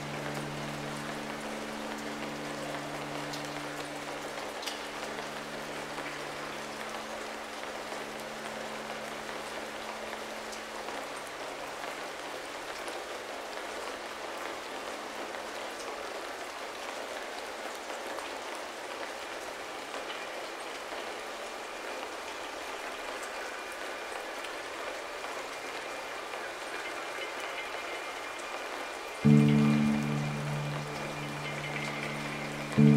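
Steady rain ambience. A low sustained piano chord fades away over the first several seconds, leaving the rain alone, and a new low piano chord is struck loudly about a second before the end.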